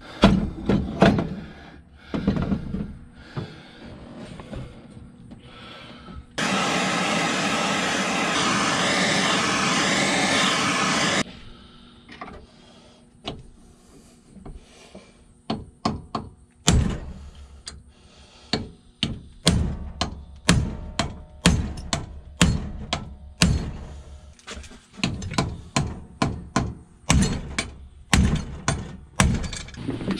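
Repeated hammer blows on a hydraulic cylinder clamped in a bench vise, knocking the rod and gland assembly out of the barrel. The strikes come fast and many in the second half. Earlier there are a few knocks and a steady loud rushing noise lasting about five seconds.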